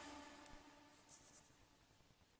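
Near silence, with one faint click about half a second in and a couple of fainter ticks a little later.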